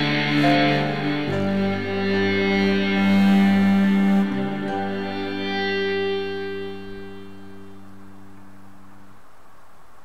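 Electric guitar through distortion and echo effects playing long sustained notes that change a few times, then ring out and fade away over the last few seconds.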